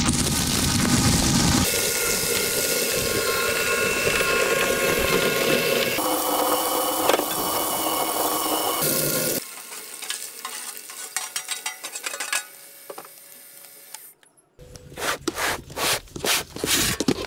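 Electric twin-shaft shredder chewing crushed aluminium cans: a steady motor whine under dense grinding and crackling of torn metal, dropping to a quieter run after about nine seconds. Near the end comes a loud, irregular clattering of loose shredded aluminium.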